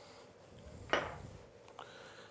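Quiet kitchen handling around a glass mixing bowl of minced-meat mixture, with one short knock about a second in.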